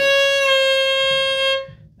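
Violin playing one bowed note, held for about a second and a half before it stops. It is a slowed-down, exaggerated step of vibrato, the fingertip rolled from C sharp down toward C natural.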